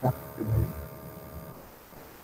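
Two short, low vocal sounds, like brief hums or murmurs, one at the start and one about half a second in, over a steady hum that stops about one and a half seconds in.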